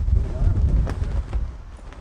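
Wind buffeting the microphone, an uneven low rumble in gusts, with faint voices in the background.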